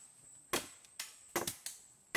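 Wood being chopped by hand with a blade: four sharp, irregularly spaced strikes into a wooden pole.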